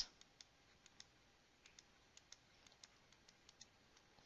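Faint, irregular ticks of a stylus tapping and dragging on a drawing tablet as a word is handwritten, a dozen or so spread through a near-silent room tone.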